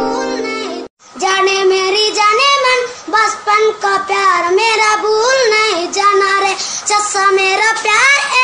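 A Hindi pop song with a child's voice singing the melody over backing music. It opens on a steady held chord that cuts out briefly about a second in, then the singing comes in.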